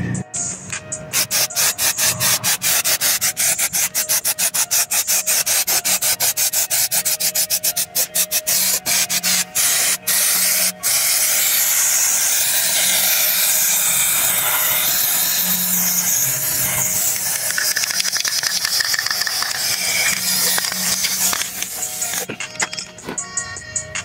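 Rust-Oleum aerosol spray can shaken with fast, regular rattling clicks, then spraying coating in a long steady hiss that stops shortly before the end.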